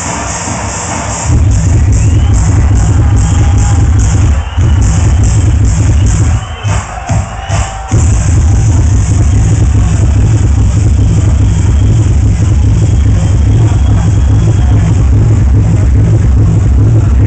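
Loud techno from a club sound system during a DJ set. The heavy kick-drum beat drops in about a second in and stutters with brief cut-outs in the middle before running on.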